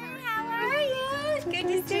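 Women's voices in high, drawn-out excited greeting exclamations, over background music.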